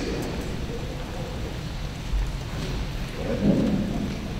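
Low rumbling room noise in a large gymnasium, with a brief faint voice near the end.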